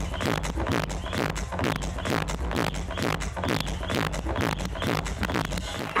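Electronic dance music with a steady, fast beat and heavy bass.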